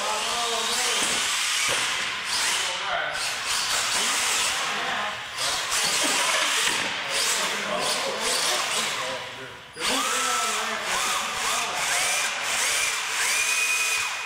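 Electric motor and gears of a radio-controlled monster truck whining as it is driven on a concrete floor, the pitch rising and falling with the throttle and rising again near the end, with a brief drop about ten seconds in.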